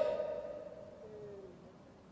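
A man's voice trailing off: the last word fades out over about a second and a half in the room's echo, with a faint short hum about a second in.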